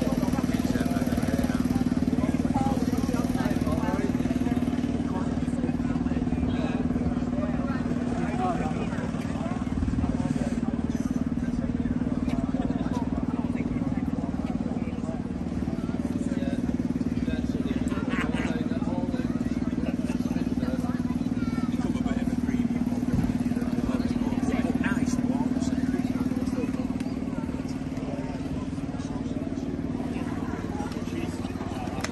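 A scooter engine idling steadily, with the chatter of a crowd of people talking around it.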